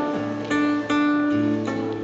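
Acoustic guitar played alone between sung lines, picking sustained chords with a new attack about every half second.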